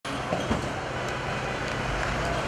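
Police water cannon truck's engine running as it drives on a wet street, a steady low rumble with two short knocks in the first second.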